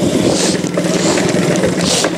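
Yamaha TTR-90 mini dirt bike's small single-cylinder four-stroke engine running steadily, with rough noise over it and two brief hissing swells, about half a second in and near the end.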